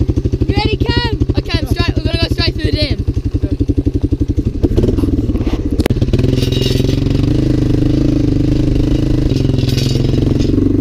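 Quad bike engine running with an even pulse at low revs, then revving up about five seconds in and holding a steadier, higher note. A voice calls out over the engine in the first three seconds.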